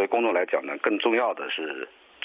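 Speech only: a man speaking Mandarin, the sound thin and narrow like an old broadcast recording, with a short pause near the end.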